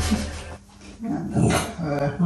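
A dachshund growling in low, wavering rumbles that start about a second in. It is a warning growl at another dachshund it is facing.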